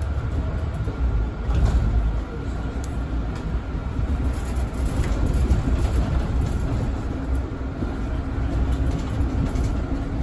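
Inside a Mercedes-Benz Citaro 2 city bus on the move: a steady low rumble of engine and road, with a faint steady whine and a few light rattles.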